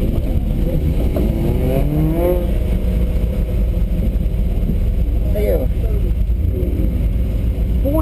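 Car engine and road noise heard from inside the cabin as a steady low rumble while the car rolls slowly on wet pavement after the run, with a brief rising tone about two seconds in.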